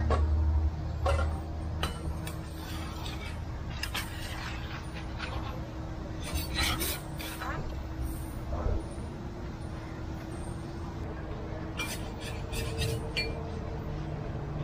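Busy street-market stall ambience: a murmur of voices over a steady low hum, with scattered clinks and knocks of metal utensils and pans, in clusters about four, seven and twelve seconds in.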